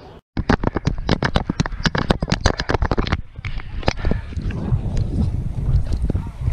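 A fast, irregular run of sharp clicks and knocks from a head-mounted GoPro being handled. About halfway through, wind starts buffeting the microphone with a low rumble.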